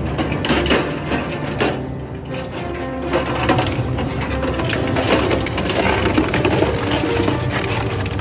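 Industrial twin-shaft shredder's toothed rotors tearing apart a welded metal frame: repeated crunches and cracks of metal giving way, with background music over it.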